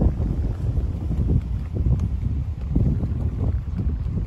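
Wind buffeting the microphone: a loud, uneven low rumble that rises and falls in gusts.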